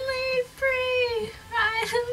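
A young woman singing unaccompanied, holding long notes in three short phrases. Her voice is deepened and rough from a head cold.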